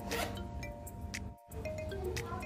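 A zip on a handbag's back pocket being pulled, a short rasp over soft background music, with a brief dropout about halfway through.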